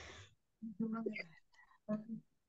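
Faint, low speech over a video-call connection: a short murmured phrase about a second in, with a breathy sound at the start.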